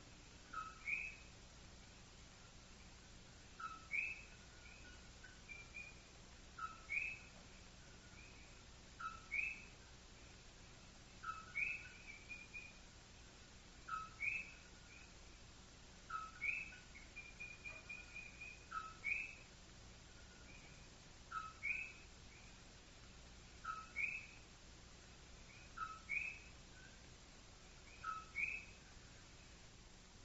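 A bird calling faintly: a short call that jumps from a lower to a higher note, repeated about every two and a half seconds, with a quick run of chirps a little past the middle.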